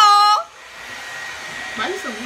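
Handheld hair dryer running steadily, a rushing blow with a faint high whine from its motor, building slightly. It starts as a loud held note cuts off about half a second in.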